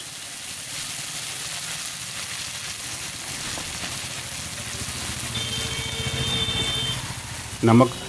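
Chowmein noodles, vegetables and sauces sizzling in a hot steel wok over a gas burner: a steady frying hiss that swells a little about two-thirds of the way through.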